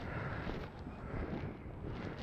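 Wind on the microphone: a low, even rumble and hiss of outdoor air noise.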